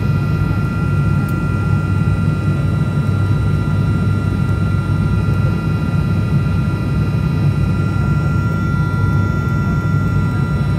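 Cabin noise of a high-wing turboprop airliner descending on approach: a steady low drone from the engines and propellers with several steady high whining tones over it.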